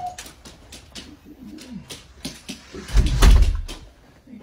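A dog making low, wavering whining and grumbling sounds, with scattered sharp clicks, then a loud low thump about three seconds in.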